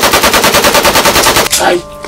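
A rapid burst of automatic rifle fire, many shots a second, lasting about a second and a half, then a man's short shout near the end.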